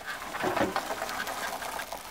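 Plastic wheels of a toy truck and horse trailer rolling over artificial turf: a continuous crackly rustle of many fine ticks.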